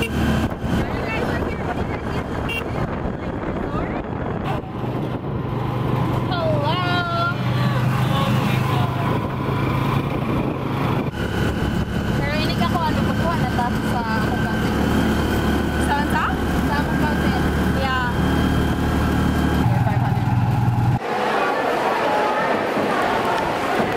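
Motorcycle engine of a tricycle running under way, a steady low drone heard from inside the sidecar, its pitch stepping up and down a few times as the ride goes on. The drone cuts off about a second before the end.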